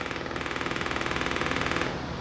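A 1-inch speaker driven by a keychain amplifier at about one watt with a 20 Hz test tone, giving a rapid rhythmic buzz that eases slightly near the end. It doesn't like it: the tone lies far below what so small a speaker can reproduce, so it buzzes with distortion instead of playing a clean bass note.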